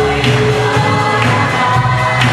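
A group of voices singing a song together over instrumental accompaniment, with a steady beat about once a second.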